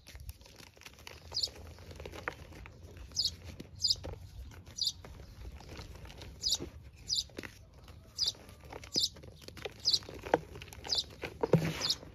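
Hands squeezing and crumbling blocks of gym chalk in loose chalk powder: soft crunching and pattering of powder with small crackles. A short high-pitched chirp recurs roughly once a second.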